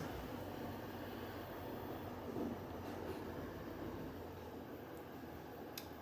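Heat gun running with a steady blowing hiss as it warms wet epoxy resin.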